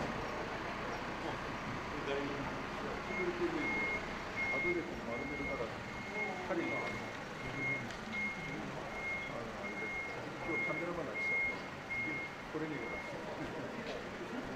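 A vehicle's reversing alarm beeping at a steady high pitch, about one and a half beeps a second, starting a few seconds in and stopping near the end, over the chatter of a group of people.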